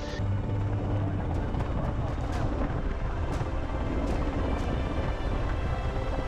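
Steady wind and engine rumble of an inshore lifeboat at sea, with faint background music over it.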